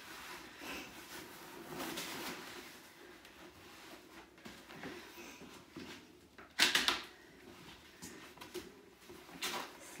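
Handling noises from a pushchair's seat unit and frame: low rustling of fabric and parts, with a sharp double clack about seven seconds in and a smaller one near the end.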